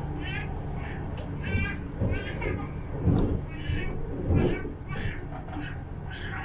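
Regional train running along the track with a steady low rumble, overlaid by a string of short, wavering high squeals about every half second, two louder rumbling surges after about three and four and a half seconds, and one sharp click just after a second in.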